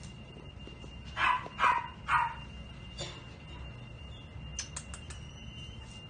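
A dog barking three times in quick succession, short sharp barks just over a second in. A few light clicks follow later.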